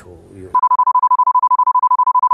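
A television censor bleep: one steady, high beep that starts about half a second in and holds, masking the guest's speech.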